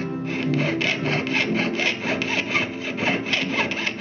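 Jeweler's saw cutting through thin metal sheet on a bench pin, quick even rasping strokes at about three to four a second, heard over background guitar music.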